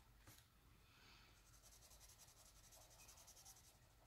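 Very faint scratching of a Tris water-based felt-tip marker moving over sketchbook paper in quick, repeated short strokes.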